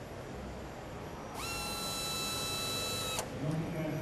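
Electric motor on a robot's end-of-arm tool tightening a SpeedLoc workholding clamp: a steady whine that rises briefly as it starts, holds one pitch for about two seconds and cuts off suddenly.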